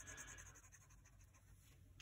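Faint scratching of a felt-tip highlighter shading back and forth on paper, fading to near silence.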